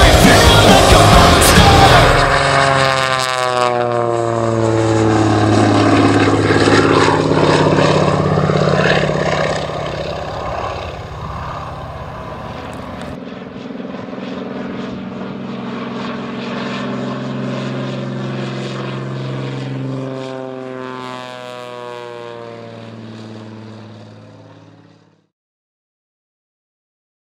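Rock music ends in the first two seconds. Then the radial engine and propeller of the Demon-1 biplane drone steadily as it flies past, the sound sweeping as it passes. It fades and cuts off about a second before the end.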